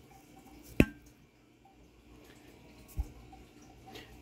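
Cooked stew beef chunks dropped into a pan of cheese dip: a sharp tap about a second in and a soft low thump near the end, otherwise quiet.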